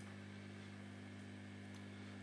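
A steady, faint low electrical hum made of a few even tones, unchanging throughout.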